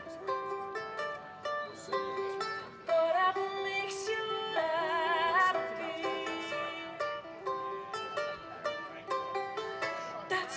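A woman singing with vibrato over her own small plucked string instrument in a live solo song, the notes changing in quick steps with short plucked attacks.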